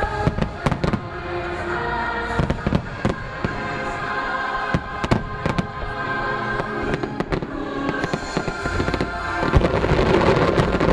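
Aerial fireworks shells bursting in clusters of sharp bangs, over show music with held notes.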